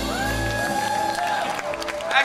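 A live band with acoustic guitars and drums ends a song: the low notes stop about half a second in, and the crowd starts whistling, whooping and clapping.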